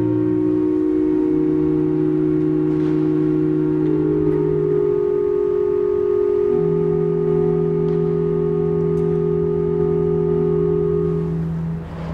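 Organ playing slow, quiet chords of long held notes, one chord melting into the next every few seconds and released just before the end.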